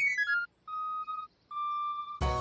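A quick falling run of chiming notes, then two electronic beeps of one steady pitch from cartoon gadget wristwatches, the second longer than the first.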